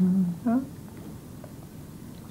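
A woman's voice gives a short hummed "mm" and a brief vocal sound within the first second, then only quiet room tone.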